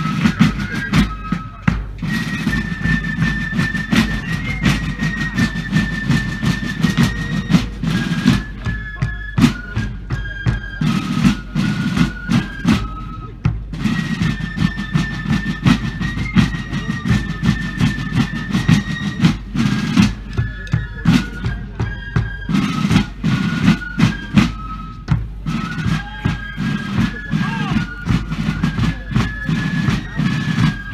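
Massed fifes and field drums playing a march together: a high fife melody over steady drumming. The same tune phrase comes round again about halfway through.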